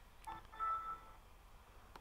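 A short, faint electronic chime of several tones, under a second long, as the Windows 7 desktop comes up: the Windows logon sound.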